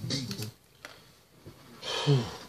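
A rap song playing back stops about half a second in, leaving a quiet pause with a couple of faint clicks. Near the end a man starts to laugh breathily.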